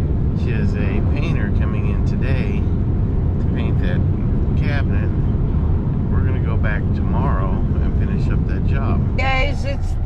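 Steady road and engine rumble inside a moving pickup truck's cab, with a man's voice talking over it.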